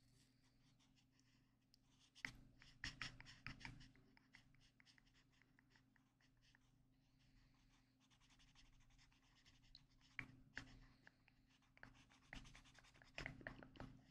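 Pink highlighter's felt tip rubbing and scratching on paper as a mandala is coloured in. The strokes are quiet and come in short bunches, about two seconds in and again from about ten seconds on, with a softer stretch between.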